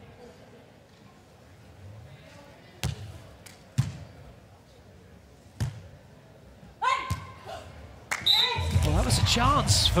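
Sharp smacks of hands striking a volleyball during a rally: five hits spread out about a second or two apart. There is a short shout about seven seconds in, and loud arena music cuts in suddenly a little after eight seconds, once the point ends.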